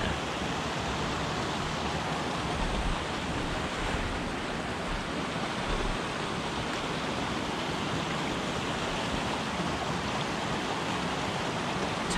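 Shallow mountain stream running over rocks, a steady even rush of water.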